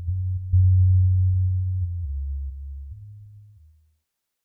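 Deep sub-bass notes closing out a breakbeat DJ mix, stepping between a few low pitches, louder about half a second in, then fading out to silence shortly before the end.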